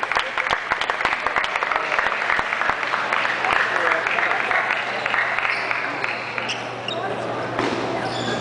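Table tennis balls clicking off bats and tables in a busy hall, many clicks close together in the first few seconds, then only a few, over a steady hubbub of voices.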